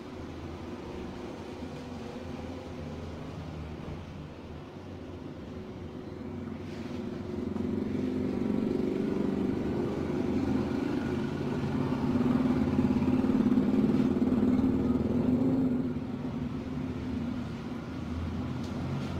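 A motor running with a steady hum, growing louder about seven seconds in and dropping back near the end.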